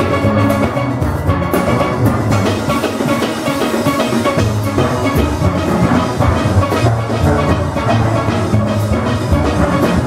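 A full steel orchestra playing live: massed steelpans carrying the melody over low bass pans, with a steady drum-kit rhythm underneath.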